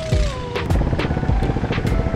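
Background music with a steady beat, about two strikes a second, laid over the steady running engine of a long wooden river boat under way.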